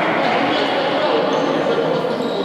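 Voices and shouts from players in a futsal game, echoing in a gymnasium, heard as a steady mixed babble.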